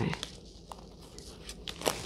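Light handling noise of a metal tin in clear plastic wrap: the plastic rustles and crinkles softly, with a few faint ticks and a sharper click near the end.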